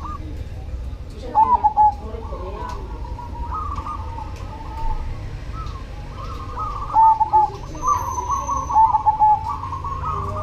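Zebra dove (perkutut) singing: its rolling, quick-warbled cooing phrases follow one after another, loudest about a second and a half in, at about seven seconds and again near nine seconds.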